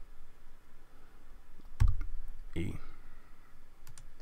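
A single sharp computer-keyboard keystroke about two seconds in, with a dull thump under the click, then a fainter click near the end.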